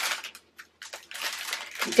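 Thin plastic packets of diamond-painting drills crinkling as they are handled: a few light crackles, a brief pause, then continuous crinkling from about a second in.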